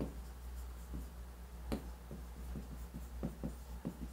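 Pen writing by hand on a board: a quick, irregular run of short taps and scratches as the strokes of a few words are drawn, over a low steady hum.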